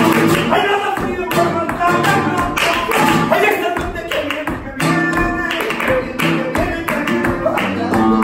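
Live flamenco music: an acoustic flamenco guitar playing, with rhythmic hand-clapping (palmas) from the seated performers.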